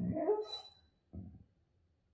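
Siberian husky vocalizing: a drawn-out, grumbling dog call that rises in pitch and breaks off in the first second, then a short grunt.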